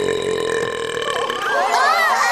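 A cartoon manticore lets out one long, drawn-out burp. About a second and a half in, several cartoon voices gasp at once.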